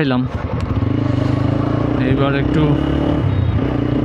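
TVS Apache RTR 160 4V's single-cylinder engine running steadily as the motorcycle picks up speed along the road.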